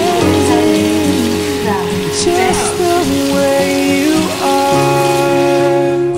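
Tap water running steadily onto a newborn's head and splashing into a stainless steel sink during a bath, the splashing stopping near the end.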